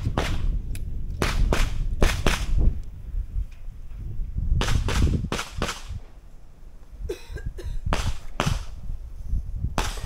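Handgun shots fired at match targets: a string of about a dozen sharp cracks, many in quick pairs, with two short pauses between groups.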